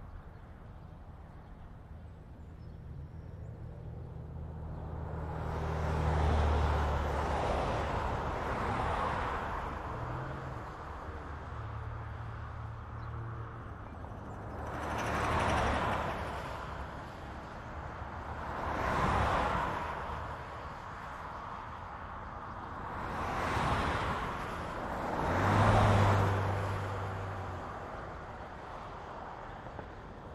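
Highway traffic with vehicles passing one after another. Each pass is a slow rise and fall of tyre and engine rush, about five in all. A low engine hum is heard at the start and again near the end.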